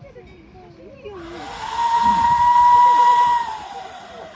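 Small steam tank locomotive's whistle sounding one long blast: a hiss of steam, then a steady high whistle for about two seconds that sags slightly in pitch as it closes off. The departure whistle, given as the green flag is shown.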